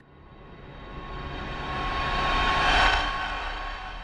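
Whoosh transition sound effect: a rushing swell that builds for nearly three seconds, peaks, then fades away.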